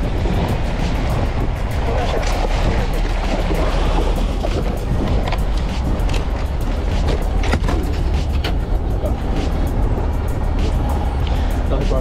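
Water splashing and churning against a boat's hull as a hooked yellowfin tuna is pulled alongside on its leader and gaffed, over a steady low rumble from the boat's engine.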